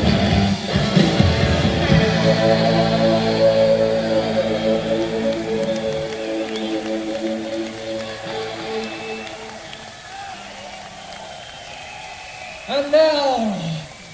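Live rock band ending a song: the full band with drums plays until about two seconds in, then a held chord rings on and fades away over several seconds. Near the end a voice calls out in one drawn-out note that rises and falls in pitch.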